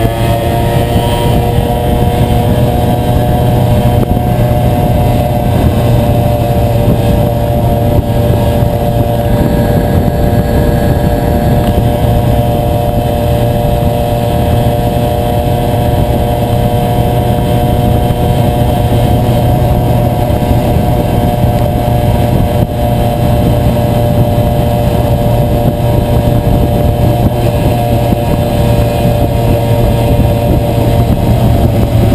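A tuned 1987 Yamaha FS1 50cc two-stroke moped engine (Mikuni 16mm carb, 32mm exhaust) running at a steady cruising speed on the move, its pitch levelling off just after the start and then holding even. Heavy wind rush on the microphone runs beneath it.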